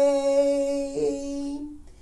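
A woman's voice holding one long, steady sung note without accompaniment, with a slight wobble about a second in, fading out near the end.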